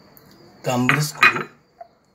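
Metal spoon and dishware clinking and scraping, a cluster of sharp knocks about half a second to a second and a half in, with a small ring near the end.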